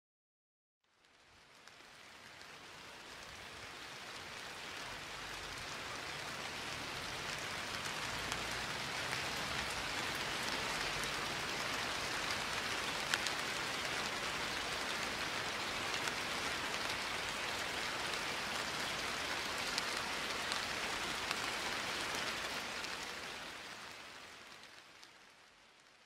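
A steady hiss with scattered faint ticks. It fades in over the first several seconds and fades out near the end.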